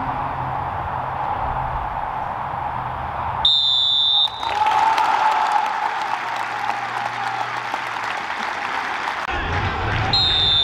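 A referee's whistle blows once, a shrill blast of just under a second about three and a half seconds in. The crowd then applauds steadily to near the end.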